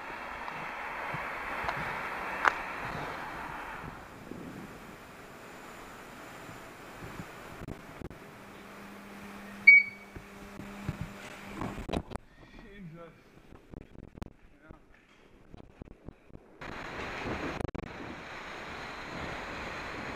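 Wind rushing over a helmet-mounted camera while cycling, dropping away for stretches in the middle. About ten seconds in comes a single short, loud ping over a low steady hum.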